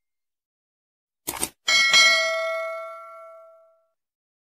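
Subscribe-button sound effect: a short double click about a second in, then a bright bell ding that rings with several tones and fades out over about two seconds.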